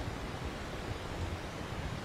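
Steady faint hiss of the recording's background noise, with no distinct events.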